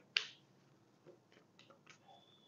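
A deck of tarot cards being shuffled by hand: one sharp snap of the cards just after the start, then a few faint ticks.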